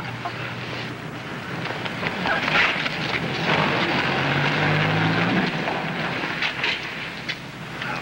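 A car driving past: engine hum and road noise that grow louder to a peak around the middle and then fade away.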